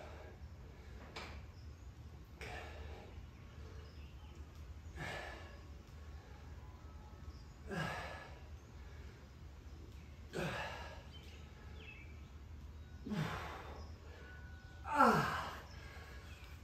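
A person exhaling hard in a steady rhythm during off-set push-ups with one hand on a kettlebell, a forced, sigh-like breath out about every two and a half seconds, one per rep. The last breath, near the end, is the loudest.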